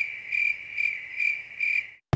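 Cricket chirping: a steady high-pitched trill that pulses about twice a second, starting and cutting off abruptly, like an edited-in 'crickets' sound effect marking an awkward silence.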